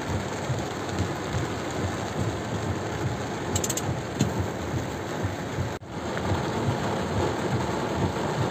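Heavy rain beating steadily on a car's roof and windshield, heard from inside the car as an even hiss, with a momentary break about six seconds in.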